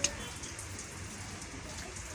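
Steady background hiss with no distinct events.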